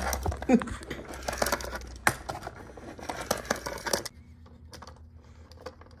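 Small plastic monster toy rolled back and forth across a wooden table on its bottom wheel, an irregular clicking and rattling that stops about four seconds in.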